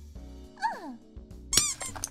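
Soft background music with cartoon squeak sound effects: a short high squeak that slides down in pitch about half a second in, and another brief squeak about a second and a half in.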